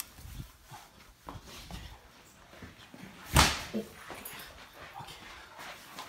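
A dog whimpering and yipping, with one loud thump about three and a half seconds in.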